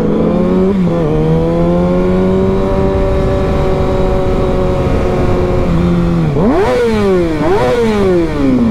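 Sport motorcycle engine heard from the rider's seat with wind noise. The engine holds a steady pitch at moderate speed after a brief dip about a second in. Near the end it revs up and drops back twice, then winds down.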